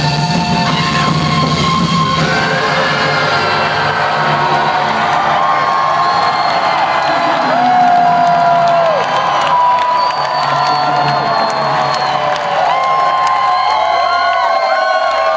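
A large arena crowd cheering and whooping, with many short high calls, as the band's rock music dies away about two seconds in and lingers faintly underneath.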